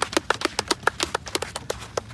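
A small group of people clapping their hands: quick, uneven claps that thin out near the end.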